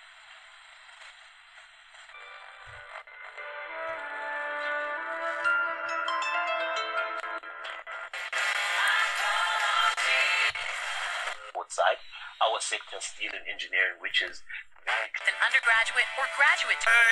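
A small DIY kit radio's speaker playing an FM broadcast: a faint hiss at first, then music that grows steadily louder over several seconds, then an announcer's voice in the second half.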